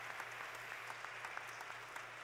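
Congregation applauding: many hands clapping steadily, with no one speaking over it.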